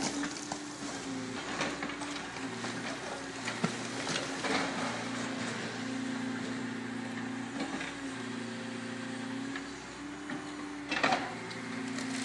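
Hydraulic excavator with a demolition grapple working a brick wall: its engine and hydraulics give a steady hum, with scattered knocks and clatter of bricks and rubble falling. About eleven seconds in, a louder crunch of masonry breaking.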